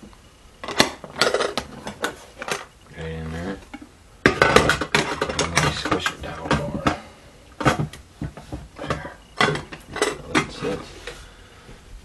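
Metal camp cookware clanking and clinking as a military-style canteen cup is handled, set down on a metal mess kit and its lid and wire handle fitted. The sound is a series of sharp clanks, busiest a few seconds in, then scattered clicks.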